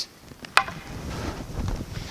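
Shoes shuffling and stepping on a wooden floor with clothing rustle, as a sword practitioner advances on a retreating partner. One sharp wooden knock about half a second in.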